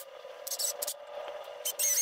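Small clicks and scrapes of hand tools being handled: a small twist drill bit picked up off a silicone mat and a cordless drill taken up with it. There is a louder brief rattle of clicks near the end, over a faint steady hum.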